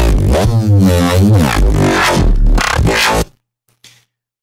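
Non-resampled Reese bass patch built from ring-modulated FM in FL Studio's Sytrus synth, played back: a loud, deep bass whose overtones sweep down and back up. It cuts off abruptly a little over three seconds in.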